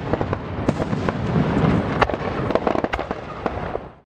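Fireworks display: a dense run of crackling pops and sharp bangs over a low rumble, fading out at the very end.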